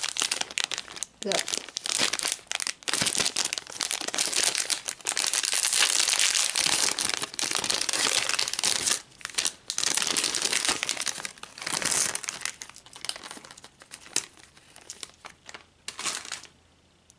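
Thin clear plastic bag crinkling as hands rummage through the miniature plastic toys inside it, in uneven bursts of crackle. The crinkling thins out over the last few seconds.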